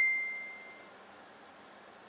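A single high ding that rings on and fades away over about a second, leaving only faint room background.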